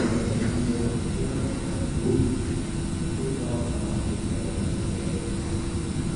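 Steady low room rumble with a faint hum, the background noise of a large hall.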